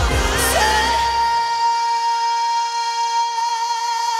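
Female pop singer belting one long high note live, sliding up into it about half a second in and holding it steady. The band's backing drops out about a second later, leaving the held note almost alone.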